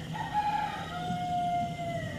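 A rooster crowing: one long call that steps down in pitch and holds a steady final note before trailing off.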